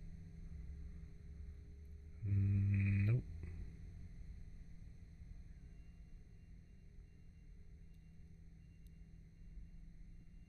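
Quiet room tone with a low steady hum; about two seconds in, a man gives a short, low, held hum lasting about a second.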